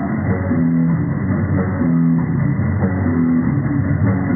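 Live rock band playing an instrumental passage: electric guitar chords in a figure that repeats about every one and a half seconds, over drums.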